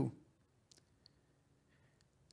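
A pause in speech: a man's voice trails off at the start, then near-silent room tone with a couple of faint clicks less than a second apart.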